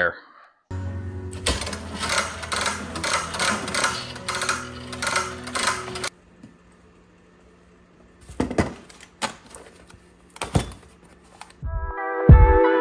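Retractable air hose reel ratcheting as the hose is pulled out: a run of even clicks, about three a second, over a steady low hum, lasting about five seconds. A few separate knocks follow, and music comes in at the very end.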